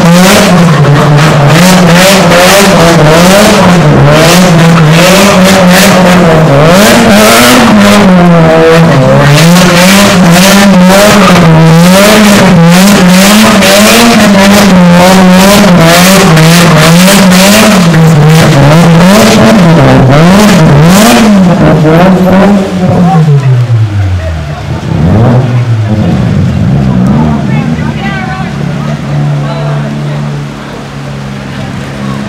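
A car engine revved hard while doing donuts on a wet road, its pitch swinging up and down over and over. After about 22 seconds the revs fall away sharply to a low idle, with a few short blips of the throttle before settling.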